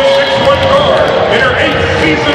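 Amplified public-address announcer's voice echoing through a basketball arena during the team introduction.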